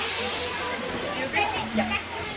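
Steady hiss of steam from the steam yacht swing ride's steam engine, with brief faint voices about one and a half seconds in.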